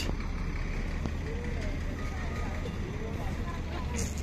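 Steady low rumble of a truck engine running, with faint voices of people in the background.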